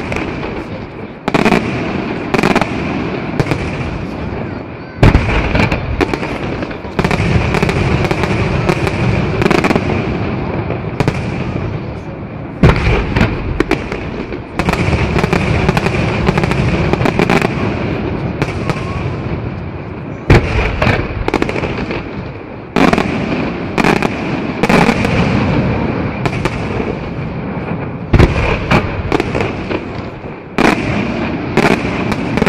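A professional aerial fireworks display: shells going off in rapid succession, many sharp bangs over a continuous rumble and crackle of bursts. Heavier reports stand out about every seven or eight seconds.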